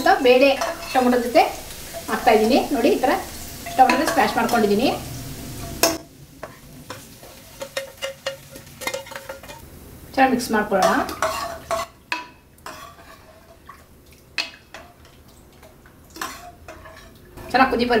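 A steel ladle stirring sambar in an aluminium pressure cooker, with scattered clinks and scrapes of metal against the pot.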